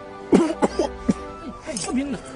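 A man's coughing fit: a run of harsh coughs that begins about a third of a second in, over background film music with sustained tones.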